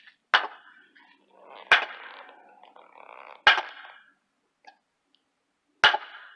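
A hammer striking a wooden post seated in a concrete deck pier block: four sharp blows, evenly spaced about every second and a half to two seconds.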